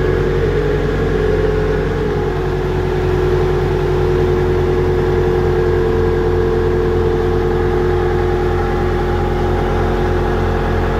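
Engine of an AirMan portable air compressor running at a steady low speed, a constant drone with a steady whine on top; the compressor reports this engine speed as a "Low engine rpm" fault.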